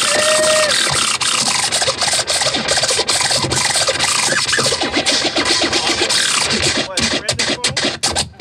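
A DJ scratching vinyl on a turntable over a hip-hop beat, pushing the record back and forth so the sound slides up and down in pitch. Near the end it breaks into rapid stop-start cuts.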